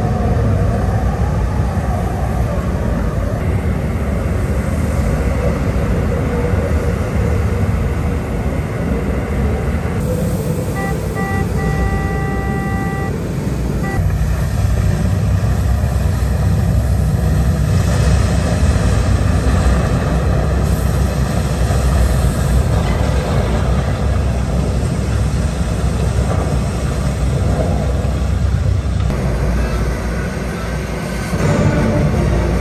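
Storm-flood exhibit soundtrack played over loudspeakers: a loud, continuous rumble of gale wind and surging sea, heaviest in the low end. About ten seconds in, a pitched signal tone sounds a few short beeps and then one longer note.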